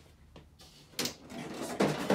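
Clatter of objects being handled and moved: a small click, then a sharp knock about a second in, followed by more rattling.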